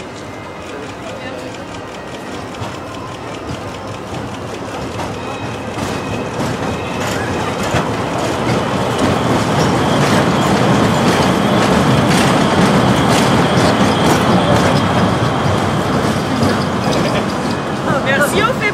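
Big Thunder Mountain Railroad mine-train roller coaster rolling past, running empty on a test run. Its rumble builds steadily as it approaches, with wheels clacking over the track. It is loudest as the cars pass close by.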